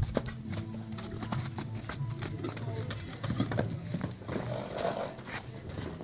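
Hooves of a loose horse striking packed dirt as it moves off and canters around a pen: irregular hoofbeats throughout.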